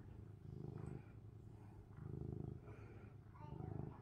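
Domestic cat purring faintly while being stroked, in three even swells, one per breath: the sound of a contented cat.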